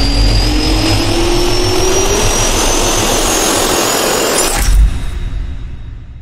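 Jet-engine turbine spool-up sound effect: a whine rising steadily in pitch over a loud rushing roar. It ends in a sharp hit just before five seconds in, then fades away.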